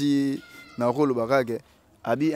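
Only speech: a man talking into a handheld microphone, a drawn-out vowel at the start, then a short phrase.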